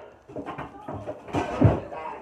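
Indistinct children's voices and the noise of kids playing close to the microphone, in short irregular bursts, loudest in the second half.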